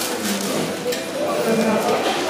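Indistinct chatter of several voices in a busy restaurant dining room, with no clear words.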